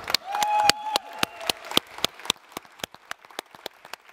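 Audience applause, thin enough that single hand claps stand out, louder in the first couple of seconds and thinning toward the end.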